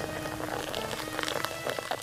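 Soft background music over the fine crackling fizz of sparkling wine being poured into a glass.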